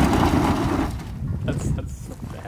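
An old Datsun Z car's engine running hard as a rear tyre spins in loose gravel, digging in, then cutting off about a second in and leaving a few light clicks.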